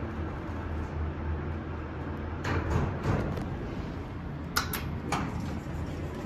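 Steady low hum inside a vintage Montgomery hydraulic elevator cab, with a brief rattle about halfway through and a few sharp clicks near the end.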